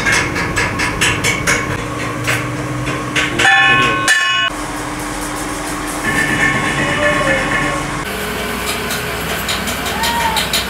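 Metal lathe running with a steady hum and a rhythmic clicking clatter, about three to four clicks a second at first. About three and a half seconds in, a brief ringing tone cuts off suddenly, and later a thin high squeal runs for a couple of seconds.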